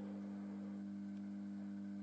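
Steady low electrical mains hum, a few even tones that do not change.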